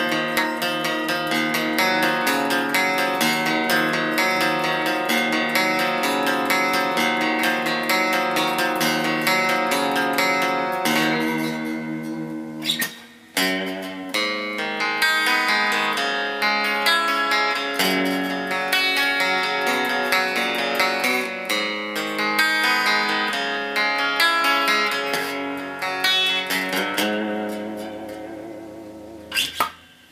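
Squier Telecaster Affinity electric guitar being played: a continuous run of picked notes and chords. There is a brief break about halfway through, and the notes fade away over the last few seconds.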